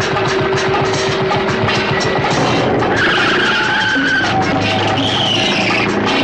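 Film background music runs throughout, with a car tyre screech about halfway through and another squeal near the end.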